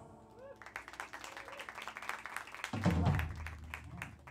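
Audience applauding and clapping as a live band's song ends, starting about half a second in. A short, loud voice comes over the PA about three seconds in.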